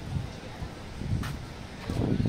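Seafront street ambience: low wind rumble on the microphone with voices of people nearby, and a brief clatter a little past halfway.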